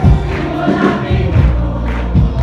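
Live worship band: a group of singers singing together over bass guitar and a steady beat of about two strokes a second.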